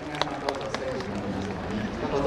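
Hand claps from a small seated group, evenly spaced and tapering off within the first second, then voices with a little laughter.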